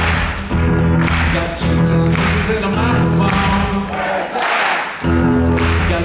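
Live acoustic guitar strummed in a steady rhythm, with singing over it; the guitar's low end drops out for about a second near the end before the strumming comes back in.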